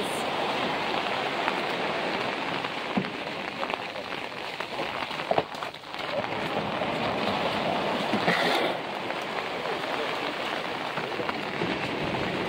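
Steady wash of small surf breaking and running up a sandy beach in the rain, with splashes of feet wading through the shallows.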